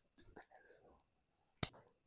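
Near silence: room tone, with one brief click a little over one and a half seconds in.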